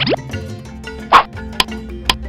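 Cartoon sound effects over light background music: a quick rising boing-like glide right at the start, then a loud short plop about a second in and a small click just after.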